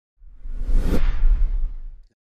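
Whoosh sound effect for a TV news logo animation. A hissing swish builds up and cuts off sharply about a second in, over a deep low rumble that carries on and fades near the end.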